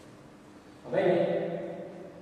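Speech only: a man's voice lecturing, starting about a second in after a short pause.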